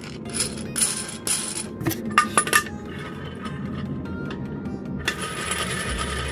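Steel washers, nut and threaded rod of a ball-bearing spool holder clinking and knocking together in the hands during assembly: a run of sharp metallic clinks over the first few seconds, then a steadier rustling from about five seconds in.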